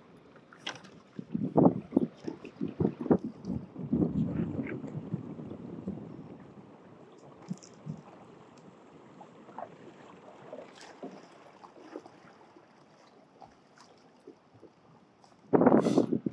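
Water splashing and lapping against a moving kayak's hull, with wind on the microphone. There is a run of irregular knocks and splashes in the first few seconds, a quieter, steady wash after that, and a sudden loud burst just before the end.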